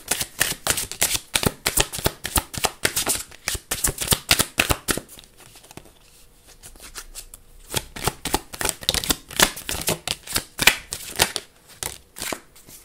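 A hand-held deck of cards being shuffled: a rapid run of crisp card clicks and flicks that eases off about halfway through, then picks up again as cards are drawn and laid down on the table.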